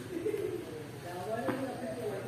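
Faint, low bird cooing, heard twice, with faint voices behind it.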